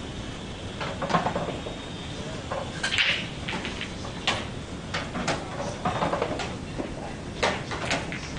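Pool hall background: scattered sharp knocks and clicks at irregular intervals, with faint murmured voices in between.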